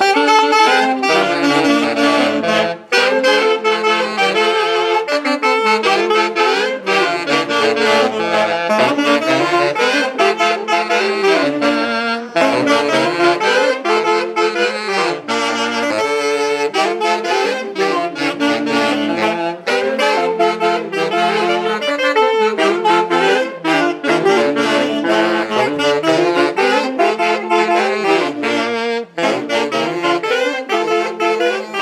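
A band of four saxophones playing a tune together, the melody moving in steady repeated notes over a held low line.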